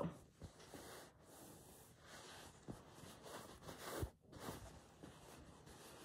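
Faint rustling of hands pressing and smoothing a stuffed fabric body, with a slightly louder rub about four seconds in.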